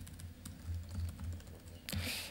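Computer keyboard being typed on: a quick, uneven run of light key clicks, faint over a low steady hum.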